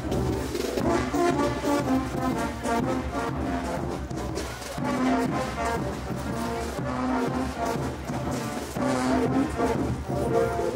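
Brass band playing dance music, with some long-held low notes over a percussion beat.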